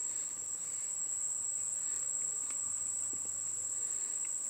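A person biting into and chewing a small, nearly dry chili pepper, a few faint crunches, mostly in the second half. Under it runs a steady high-pitched, insect-like whine, the loudest sound.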